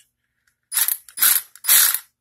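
Snap-on 14.4 V cordless quarter-inch ratchet run in three short bursts, its motor and gears whirring for under half a second each time, with a faint high whine in each burst. It runs normally with its protective boot fitted.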